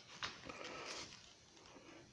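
Faint handling noise: a light click about a quarter second in, then a short soft rustle, then near silence.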